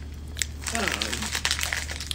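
Crackling, crinkling rustle of handling noise on a phone's microphone, starting with a click about half a second in and running for over a second, over a steady low hum.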